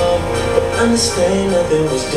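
Sembrandt HT3000 soundbar and its external subwoofer playing a song loudly, with held notes over a steady low bass.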